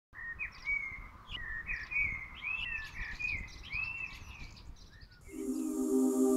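A songbird singing a continuous run of short, slurred whistled notes over a low rumble. Near the end, soft sustained music chords fade in.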